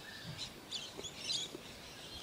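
Faint bird chirps: a few short, high calls scattered through the quiet.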